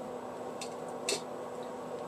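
Steady low room hum with two brief soft clicks about half a second apart, the second louder.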